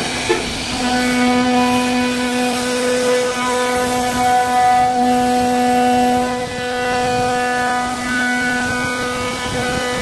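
CNC router spindle cutting wood with a milling bit: a steady, high whine over the hiss of the bit chewing through the door panel. The whine firms up just under a second in, after a short click.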